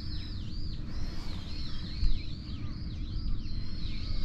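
Songbirds calling from the trees: a quick, continuous series of high whistled notes that dip and rise again, overlapping one another, over a low steady rumble.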